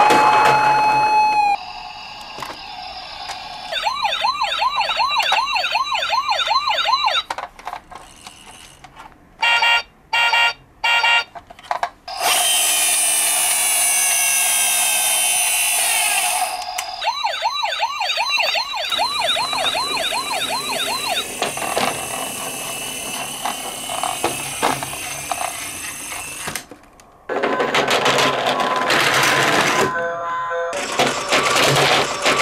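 Toy police cars' electronic siren sounds. One siren rises and holds before cutting off; later a fast warbling yelp siren runs for a few seconds twice. In between come a quick run of short beeps and a loud hissing stretch with falling tones.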